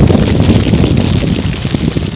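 A loud rushing, wind-like whoosh that accompanies the spirits 'orbing' away as glowing orbs. It is loudest at first and eases off toward the end.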